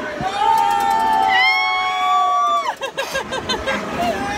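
Riders on a swinging pirate-ship ride screaming a long held "oh!" with several voices at once, one jumping higher in pitch a little past a second in, breaking off into short bursts of laughter for the last second or so.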